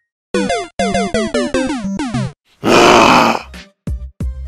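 Edited electronic sound effects: about six short synthetic tones in quick succession, each sliding down in pitch. A loud burst of noise follows about two and a half seconds in, and a last falling tone comes near the end.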